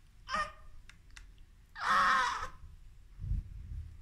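A newborn baby giving two brief cries, a short one just after the start and a louder one about two seconds in, followed by a couple of soft low thumps near the end.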